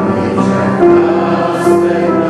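Choir singing a slow hymn with long held notes.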